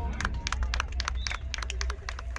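A rapid, irregular crackle of sharp reports: rifles firing blank rounds in a mock combat drill, the shots overlapping over a low rumble.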